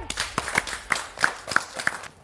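Hand clapping: a quick, uneven series of sharp claps, about six a second.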